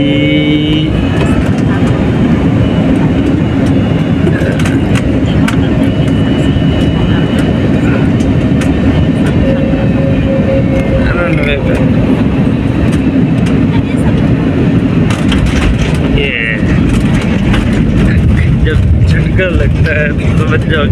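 Loud steady roar inside a jet airliner's cabin as it touches down and rolls out along the runway, its low rumble growing heavier near the end. Voices come and go over it.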